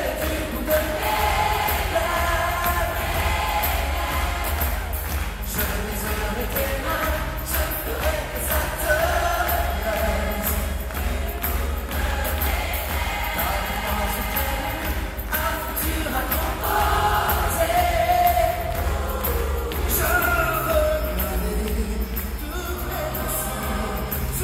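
A large choir singing a pop song live with a solo voice and amplified accompaniment, with a strong, steady bass underneath.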